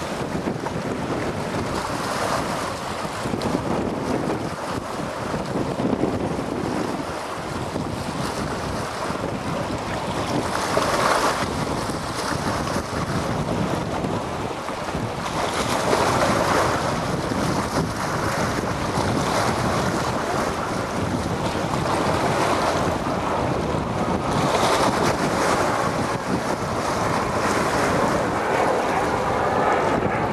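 Wind buffeting the microphone over choppy water, with water rushing and splashing in uneven surges.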